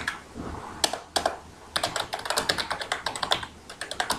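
Typing on a computer keyboard: a few separate keystrokes in the first second or so, then a quick, steady run of keystrokes through the rest.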